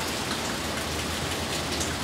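Steady rain falling outside, an even hiss with faint scattered drops.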